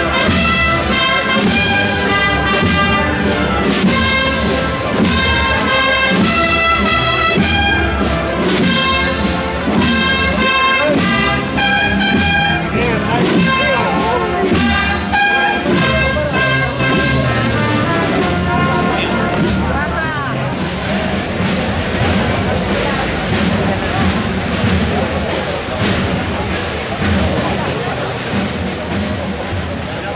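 Brass band playing a processional march, which stops about twenty seconds in and leaves the murmur of a crowd's voices.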